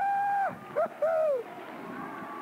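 Joyful 'woo' exclamations in a high voice: one held call, then two short hoots.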